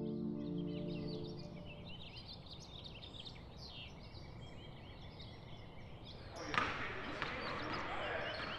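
A soft ambient music chord fades out over the first second or so. It gives way to outdoor ambience with small birds chirping. About six and a half seconds in, a louder hiss of indoor arena ambience comes in with a few knocks.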